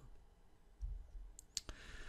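Faint room tone in a pause of speech, with a soft low thump about a second in and then two faint, short clicks close together near the end.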